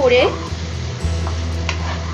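Pointed gourds (potol) frying and sizzling in oil and masala in a nonstick pan while a spatula stirs them, with a couple of brief spatula scrapes against the pan.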